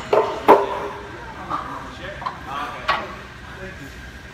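Steel weight plates and the plate-loaded leg press clanking: two sharp metal knocks close together near the start, the loudest sounds here, and another about three seconds in.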